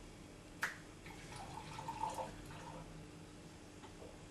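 A sharp clink, then about a second and a half of liquid pouring from a plastic jug into a drinking glass.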